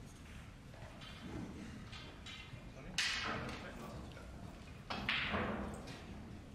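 Two sudden thuds about two seconds apart, each trailing off over most of a second, with faint voices in between.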